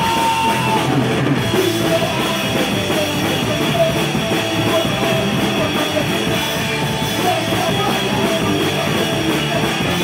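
Punk rock band playing live: electric guitars, bass and drum kit, with a singer shouting into the microphone.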